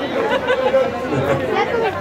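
Voices talking, with chatter in the background.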